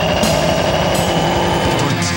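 Thrash metal band playing: very fast, dense drumming with rapid kick-drum strokes under distorted guitar.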